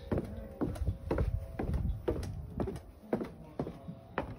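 Footsteps going down weathered wooden outdoor stairs, about two steps a second.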